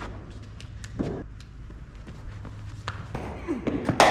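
A man coughs once, about a second in, over a steady low hum, with a few faint taps.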